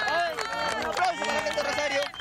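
A small group of football fans cheering with long held shouts and clapping their hands.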